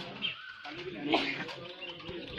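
Birds calling among faint voices of people talking nearby.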